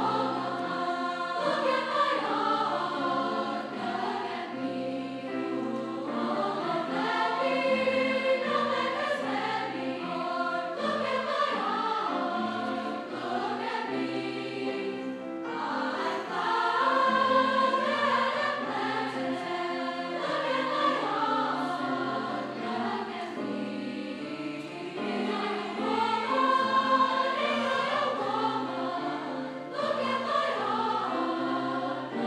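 Large choir singing, with a short break about halfway through.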